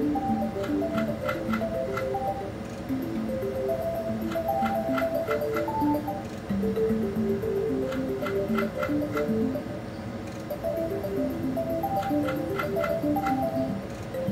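Mystical Unicorn video slot machine playing its spin melody over and over, with a quick run of ticks as the reels stop on each spin, four times in all. The spins are losing spins, with nothing won.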